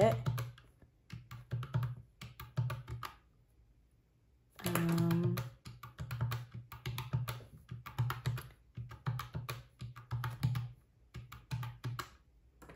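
Keys of a white plastic desktop calculator being tapped in quick runs of short clicks, entering figures one after another. A brief voiced sound comes about five seconds in.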